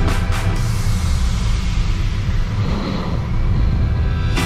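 Background music with a heavy bass line; the drum hits drop out about half a second in, leaving mostly bass.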